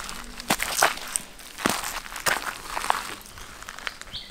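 Footsteps of sneakers on a dirt path littered with dry leaves and fallen fruit: about five separate, irregular steps.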